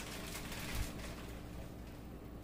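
A second or so of rustling, handling noise with one dull thump a little under a second in, as corn cobs and potatoes are handled and added to a steel stockpot of simmering stock.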